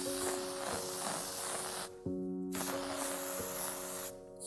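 Aerosol can of texturizing hairspray hissing in two long bursts, the first stopping just under two seconds in and the second starting again a moment later, over steady background music.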